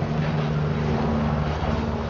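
A steady low drone like a running motor, with an even hiss over it.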